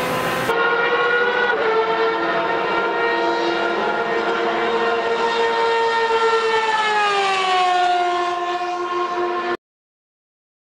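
Formula 1000 open-wheel race car's 1000cc motorcycle engine running at high revs, holding a steady high pitch. About seven seconds in the pitch falls, then holds lower until the sound cuts off abruptly near the end.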